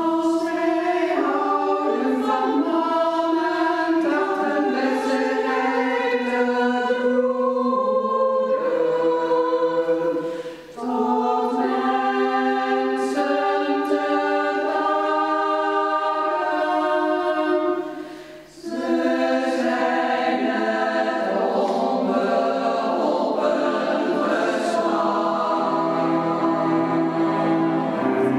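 Women's choir singing slow, sustained chords in several parts, with two brief breaks, about 11 and 18 seconds in.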